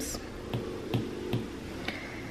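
Four light, sharp taps of an Apple Pencil tip on an iPad's glass screen, a little under half a second apart.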